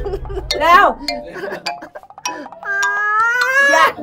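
A person's voice drawing out a long "aaaam", the sound made when spoon-feeding someone to say "open wide". It is held for about a second near the end and rises slightly. A few light clicks are heard along with it.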